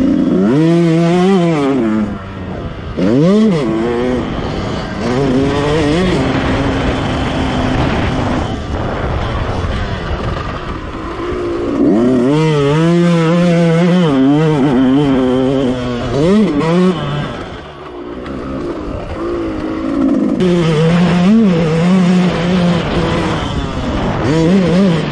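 Yamaha motocross bike engine revving hard as the rider accelerates and shifts, its pitch climbing and dropping again and again. It eases off the throttle a few times: about two seconds in, for a while around the middle, and again near eighteen seconds.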